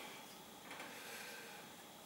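Faint rustling of canvas webbing being handled as a large needle is worked into it to make a hole, over quiet room tone.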